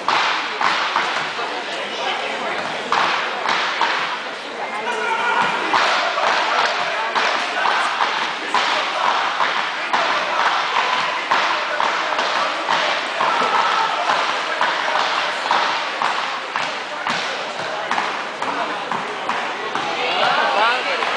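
Step routine on a gym floor: repeated foot stomps and cane taps, in uneven clusters, over continuous crowd chatter.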